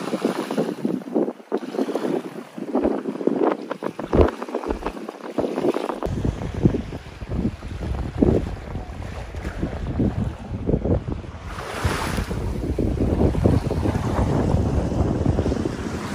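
Shallow seawater splashing and sloshing as people wade through it, with small waves lapping. About six seconds in, wind starts buffeting the microphone and adds a low rumble.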